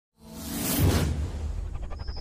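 Logo-intro whoosh sound effect: a rushing swell that builds to its loudest just under a second in and then fades, over a steady deep rumble, turning into a fluttering shimmer near the end.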